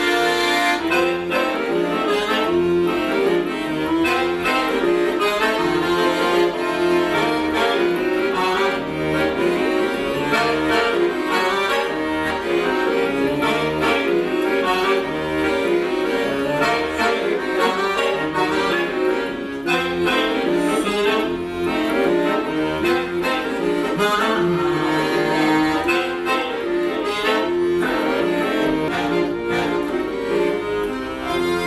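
Accordiola chromatic button accordion played solo: a busy, quickly moving melody over bass notes, continuous and steady in level.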